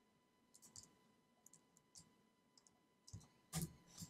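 Faint, scattered clicks from a computer keyboard and mouse, about a dozen light clicks with a louder one shortly before the end.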